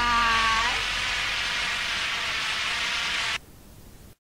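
A held, echoing vocal "why" fades out in the first second. A steady hiss of noise follows and cuts off suddenly just past three seconds, leaving only a faint hiss.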